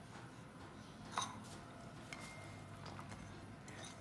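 Quiet room tone with a single faint click a little over a second in, and a faint thin high tone held for about a second and a half in the second half.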